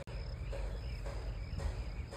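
Insects chirping in a steady rhythm, about two chirps a second, over a low rumble.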